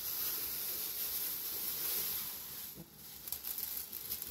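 Dry food poured from a plastic bag onto a round metal tray: a steady hissing patter with the bag rustling. It eases off about three seconds in.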